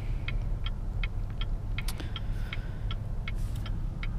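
A car's turn-signal indicator clicking evenly, about three clicks a second, inside the cabin over the steady low hum of the Cadillac ATS-V's twin-turbo V6 idling at a standstill.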